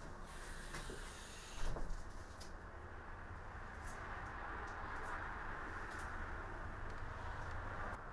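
Steady background rumble and hiss of ambient noise, with a brief knock a little under two seconds in and a few faint clicks.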